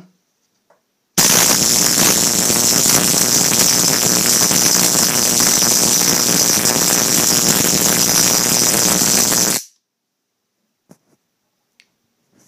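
High-voltage electric arc from a modified spark gap driven by a miniature Tesla stout bar circuit, discharging between carbon electrodes: a loud, continuous rapid crackling hiss. It starts suddenly about a second in, runs for about eight seconds and cuts off sharply.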